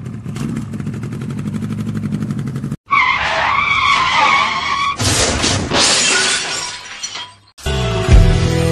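Staged road-accident sound effect: after about three seconds of rhythmic music the sound cuts out, then tyres screech for about two seconds, followed by a loud crash with breaking glass that fades away. New music starts near the end.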